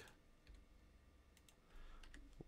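Near silence with a few faint clicks from a computer mouse and keyboard being worked.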